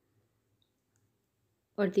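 Near silence with a faint low hum; a woman's voice starts speaking near the end.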